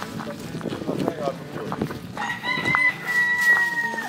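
A rooster crows once: a long, held call that starts about halfway through and runs on for nearly two seconds. Before it, hens cluck and shuffle about.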